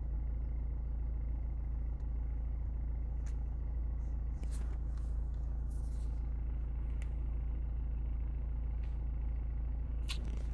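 Diesel car engine idling steadily, heard from inside the cabin as a low, even rumble.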